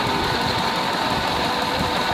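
Water gushing steadily from a tube-well's outlet pipe into a concrete tank and splashing, with a steady machine hum underneath.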